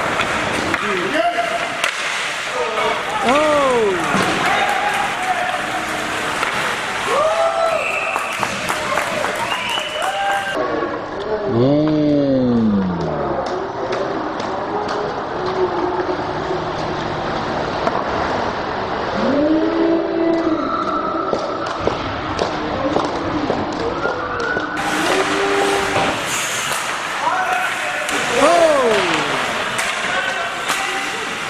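Ice hockey game sound played in slow motion: shouts from players and onlookers stretched into long, low calls that rise and fall in pitch, over many clicks and knocks of sticks, skates and puck.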